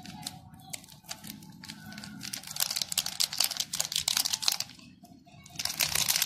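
Glitter sprinkled by hand onto freshly spray-painted plastic bottle caps and newspaper: a dense run of fine ticks and crackles. It builds about two and a half seconds in, dies down near five seconds, and returns just before the end.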